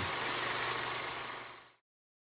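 Fading tail of a channel's intro logo sting: a steady rushing noise with a low hum underneath, dying away to dead silence about three-quarters of the way through.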